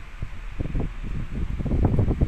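Rustling, crackling handling noise from a handheld phone's microphone as the phone is moved and rubbed, growing louder toward the end.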